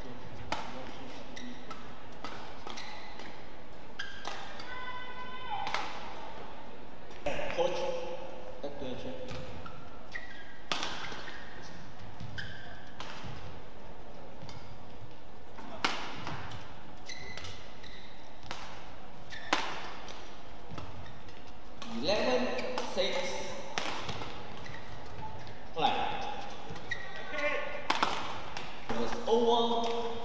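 Badminton rallies: sharp racket strikes on the shuttlecock at irregular intervals, with short high squeaks that cluster about two-thirds of the way through and near the end.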